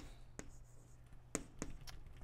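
Chalk writing on a blackboard: a few sharp, separate taps and short strokes as letters are chalked on.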